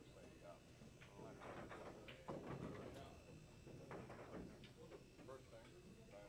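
Faint, indistinct voices talking in the background, no words made out.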